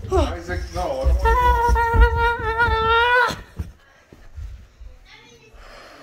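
A high voice sings out a long 'aaah', sliding down in pitch and then holding one high note for about two seconds before stopping suddenly, over thumping footsteps going down carpeted stairs. The last few seconds are quieter footsteps and breath.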